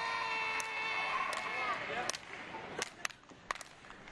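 A man's long shout held on one pitch, trailing off just under two seconds in, followed by a few scattered, sharp handclaps.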